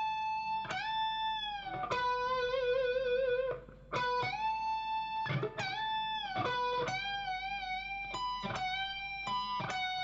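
Solid-body Telecaster-style electric guitar playing a lead lick slowly: single picked notes, several bent up in pitch and let back down, and a held note with vibrato. There is a short pause a little past halfway before the phrase goes on.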